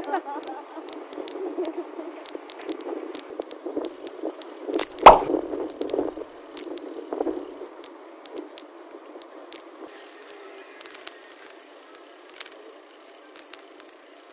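Ride noise of a bicycle on the road: an irregular rattle with many small clicks, and one loud knock about five seconds in. It grows quieter in the second half.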